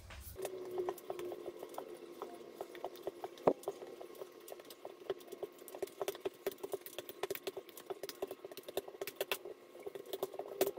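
Hands kneading soft bread dough on a floured countertop: a quick, irregular run of soft pats and small clicks as the dough is pressed and folded against the counter, with one sharper knock about three and a half seconds in. A faint steady hum runs underneath.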